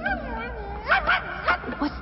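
Cartoon dog whining and yipping in a string of short cries that rise and fall in pitch.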